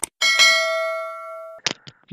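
Subscribe-button animation sound effects: a click, then a bell-like notification chime that rings and fades over about a second and a half, ended by another short click.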